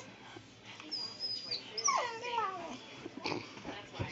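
A puppy whimpering: a thin high whine about a second in, then a whine that slides down in pitch at about two seconds.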